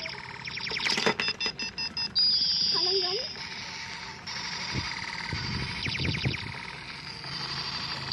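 Electronic beeps, chirps and a falling sweep over a fast ticking pattern, typical of the sound chips in battery-powered toy lanterns.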